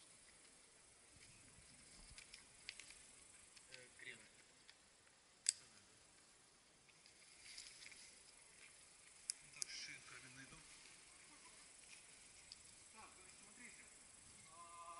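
Near silence broken by a few sharp clicks from rope and a carabiner being handled around a tree trunk: the loudest about five and a half seconds in, and two close together a little after nine seconds.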